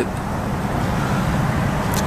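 Steady rushing background noise, even and unbroken, with no distinct events.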